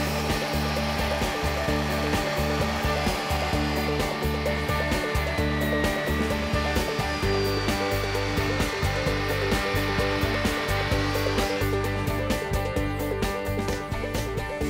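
Chainsaw cutting a scarf joint into the end of a cedar boat plank, running steadily under load.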